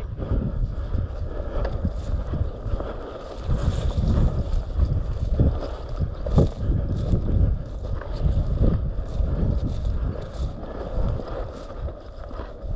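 Wind buffeting the microphone in a low, gusty rumble, with a run of brushing swishes from footsteps wading through tall dry grass, about one or two a second.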